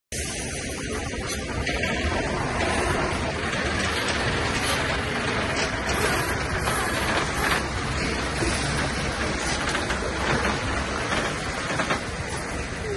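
Scania log truck's diesel engine running steadily as the loaded truck drives slowly past at close range.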